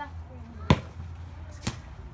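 A ball bounced on concrete: two sharp bounces about a second apart, the first one the louder.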